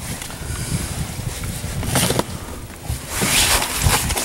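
Wind buffeting the microphone on an open boat, a steady low rumble, with louder scuffs and rustles about two seconds and three seconds in as a sturgeon is handled on the towel-covered deck.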